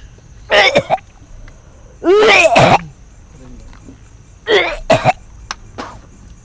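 A person coughing and clearing the throat in harsh bursts: a short pair of coughs, then one long, loud hacking cough about two seconds in, and two more coughs near the end.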